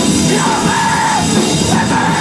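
Hardcore punk band playing live: loud distorted guitars and drums, with a yelled voice held for about a second over them.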